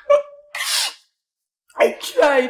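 A woman sobbing: a short voiced sob, then a sharp gasping breath in about half a second in, and another sob starting near the end.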